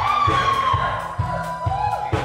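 Live band playing: a saxophone holds one long note that slides slightly down, over a steady drum beat with electric guitar and keyboard.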